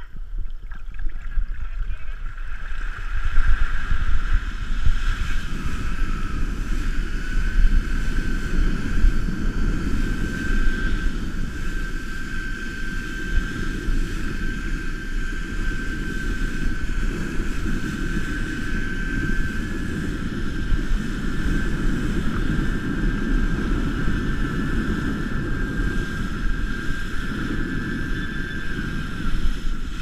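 Water rushing and spraying past a wakeboard being towed across a lake, with wind buffeting the action camera's microphone; the rush comes up within the first second or two as the tow gets going and then holds steady. A thin, steady high whine runs through it.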